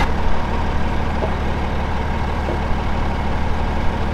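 Tractor diesel engine idling steadily with a low, even hum.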